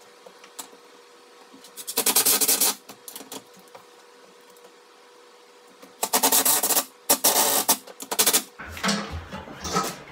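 A cordless drill-driver driving screws into a wooden wall brace in four short bursts, each under a second long. One comes about two seconds in and three follow in quick succession from about six seconds. Near the end there are low knocks and thuds as a heavy unit is handled.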